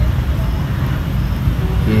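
A steady low rumble of outdoor background noise, with a voice starting near the end.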